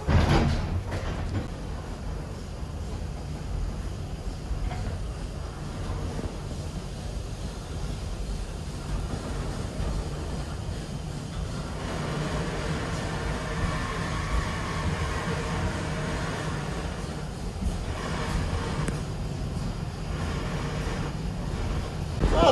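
A narrow-gauge railway carriage running, with a steady low rumble of wheels on track. It opens with one loud clunk. A higher ringing tone rises over the rumble for several seconds in the middle.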